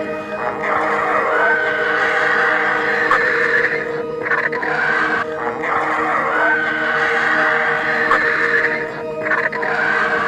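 Background music with long held tones, over which griffon vultures call as they squabble at a carcass, in long noisy stretches broken by short gaps about four and nine seconds in.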